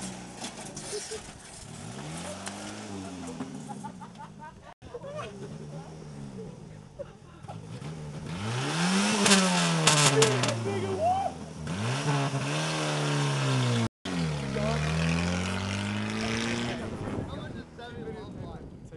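1990 Ford Escort Pony's four-cylinder engine revving as the car pulls away and drives past. The engine note rises and falls several times, loudest about nine to ten seconds in as it goes by, then fades off.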